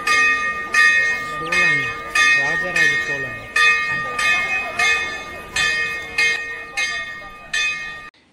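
A temple bell rung over and over, about once every two-thirds of a second, each ring hanging on until the next stroke, with voices beneath.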